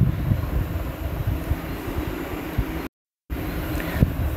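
Steady low background rumble with a fainter hiss, broken by a brief total dropout to silence about three seconds in.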